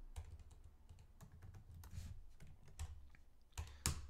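Computer keyboard being typed on: faint, irregular keystrokes, with one louder click shortly before the end.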